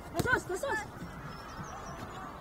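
Short shouts from several voices on a youth soccer pitch near the start, beginning with one sharp knock, like a ball being struck, then settling into a quieter outdoor background.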